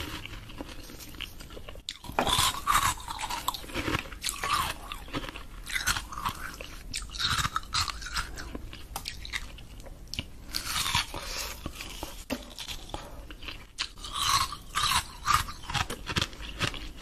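Close-miked crunching and chewing of coloured ice: teeth biting into and grinding hard ice pieces with crisp crackles, in repeated spells of louder crunching with short lulls between.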